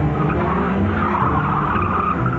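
A car's tyres skidding and squealing, in a burst that swells and then fades over about a second and a half.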